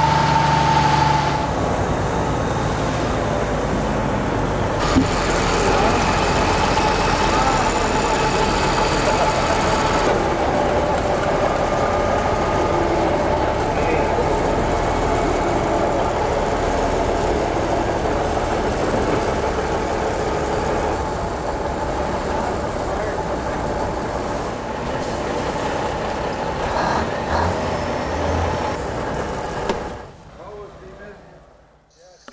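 A heavy truck's diesel engine runs steadily as the truck moves on timber planking. The sound changes abruptly a few times, with one short knock about five seconds in.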